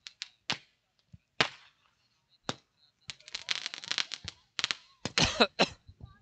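Scattered sharp cracks and pops, a few apart in the first half, then a quick dense run of them through the second half.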